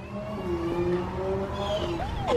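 A motor running steadily: a low hum with a fainter, higher whine over it.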